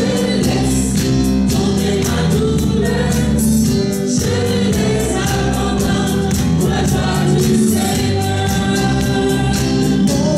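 A small gospel praise team of mixed male and female voices singing a worship song together through microphones, accompanied by a Yamaha electronic keyboard with a steady beat.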